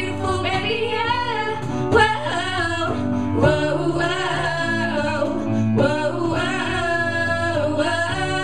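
A group of girls singing live with a small band, their voices sliding between and holding notes over sustained low chords from the accompaniment.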